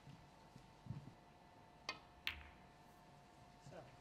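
Two sharp clicks of snooker balls about half a second apart, near the middle, over a quiet arena with a faint steady hum.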